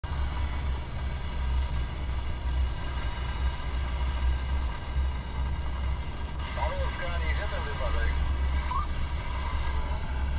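Wind buffeting a moving microphone, a steady low rumble, with a faint steady whine above it. About six and a half seconds in, a bird sings a short run of quick warbling notes for a couple of seconds.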